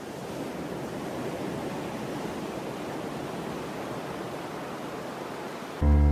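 A steady rushing noise, like surf or wind, fading in at the start as the opening of a song. Music with saxophone comes in just before the end.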